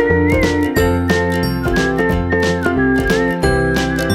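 Upbeat background music: a high, whistle-like melody over chiming bell notes, a bass line and a steady beat.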